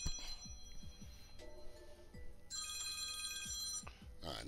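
A smartwatch sounding an electronic ringtone: steady high beeping tones that turn into a rapid pulsing run of notes about halfway through.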